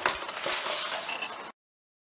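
Card stock rustling and crackling as it is handled and cut with scissors, with a few sharp snips, stopping abruptly into dead silence about one and a half seconds in.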